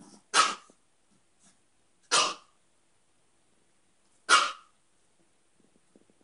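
Small dog barking three times, each a short sharp bark about two seconds apart.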